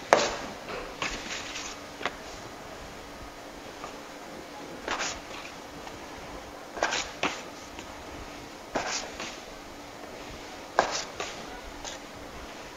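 Sharp knocks of a dough cutter striking a floured stainless-steel work table, in short clusters every couple of seconds, as ciabatta dough is cut into portions.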